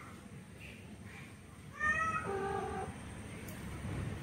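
A domestic cat meowing once, about two seconds in. The call lasts about a second and starts higher, then drops lower partway through.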